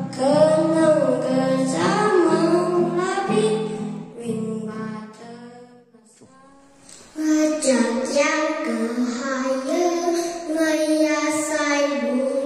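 A young boy singing a song into a microphone over a low, steady accompaniment. His singing stops around six seconds in, and after a short lull a young girl starts singing about seven seconds in.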